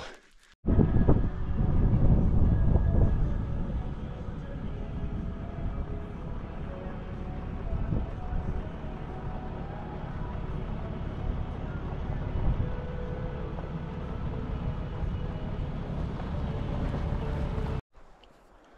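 Wind buffeting the microphone on an exposed ridge: a dense low rumble, loudest for the first few seconds and then steady, cutting off abruptly just before the end.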